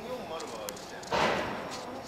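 Faint, distant voices of people talking, too far off for words, with a short burst of noise a little over a second in.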